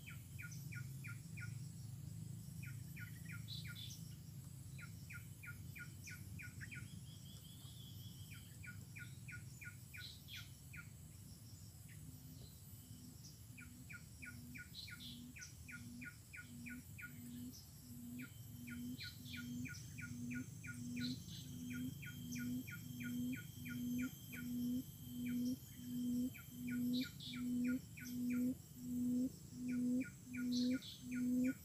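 A forest quail (puyuh hutan) giving a long series of low hooting notes, about one a second, growing steadily louder from a little before halfway on. Behind it, short trains of rapid high chirps from birds or insects come and go over a low steady background hum.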